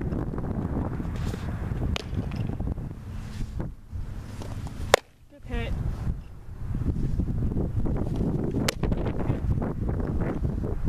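Wind buffeting the microphone in a steady low rumble, broken by a few sharp smacks of a softball into a leather catcher's mitt, the loudest about halfway through.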